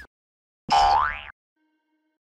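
A cartoon 'boing' sound effect, about half a second long, sweeping upward in pitch, heard once a little under a second in after a short silence.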